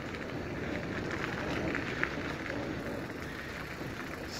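Steady rushing noise of a fat-tire bicycle being ridden along a gravel path: tyre rumble mixed with wind on the microphone, and a few faint clicks.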